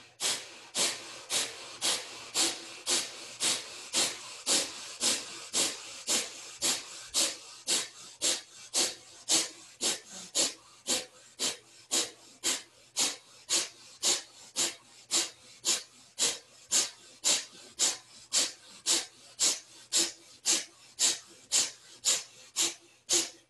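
Kapalabhati breathing: a woman's rapid, forceful exhales through the nose in a steady rhythm of about two a second, each a short hiss.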